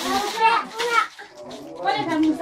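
A young child's voice: high-pitched babbling that rises and falls for about a second, then another stretch of voice near the end.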